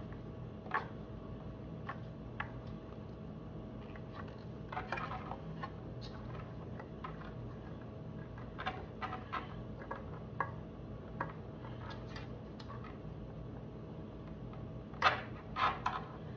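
Faint scattered clicks and rustles of hands pulling loose the wire connectors on a JBL PRX speaker's tweeter compression driver, over a steady low hum. Two sharper clicks come near the end.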